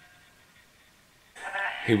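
A drawn-out pitched sound from the Necrophonic spirit-box app fading away at the start, then near silence until a voice begins about a second and a half in.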